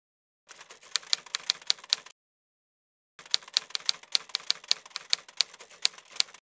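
Typewriter sound effect: two runs of rapid key clacks, the first about a second and a half long and the second about three seconds, with a pause of about a second between them.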